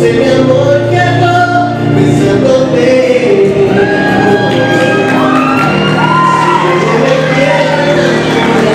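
A man singing into a microphone over instrumental accompaniment, with long held notes and wavering, sliding runs in the second half.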